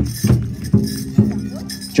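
Pow wow drum struck in a steady beat, about two strokes a second, with a held sung note, over the jingle of dancers' bells.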